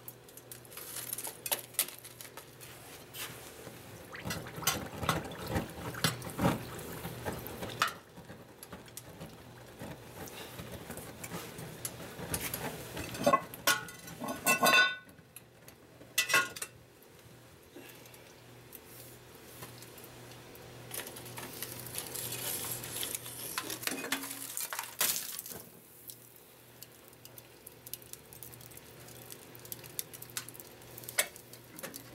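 Hot tool steel quenched in a pan of oil: a hissing, bubbling rush as the red-hot piece goes in, and a second hiss later on. Steel tongs and a metal pan and lid clank loudly around the middle.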